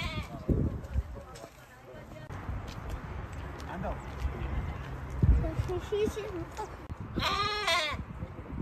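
A lamb bleats once near the end, a wavering call under a second long. Before it there are faint voices and a few low thumps.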